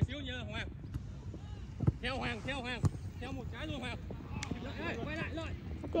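Players calling and shouting on a soccer pitch, with a few sharp knocks of a soccer ball being kicked, over a low wind rumble on the microphone.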